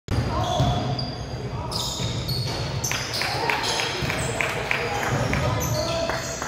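Basketball being dribbled on a hardwood gym floor, a run of bounces about three a second through the middle, amid players' and onlookers' voices.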